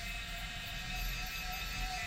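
Steady low rumble and hiss of a vehicle cabin's background noise, with a faint thin steady tone.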